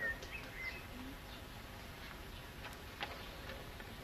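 Faint bird chirps in the first second, over a low outdoor hush, with a few soft clicks later on.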